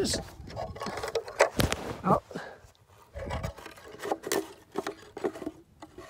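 Irregular scrapes, clicks and knocks of hands fumbling one-handed to hook a plywood birdhouse lid's wire loops into place, with rubbing close against the microphone.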